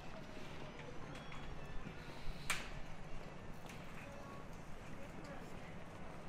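Busy pedestrian street ambience: footsteps on the pavement and passers-by talking indistinctly, with one sharp click about two and a half seconds in.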